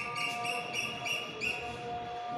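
Soft background music: sustained notes with a light, repeating pulsed figure above them.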